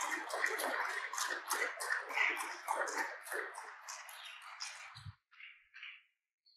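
Audience applauding, the clapping thinning out and dying away about five seconds in, followed by a brief low thump.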